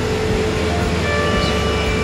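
Steady indoor air-conditioning hum with one low tone held under it. About a second in, a bell-like chord of several high tones comes in and holds.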